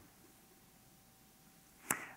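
Near silence: room tone with a faint steady hum, broken near the end by a brief sharp sound as a man's voice starts again.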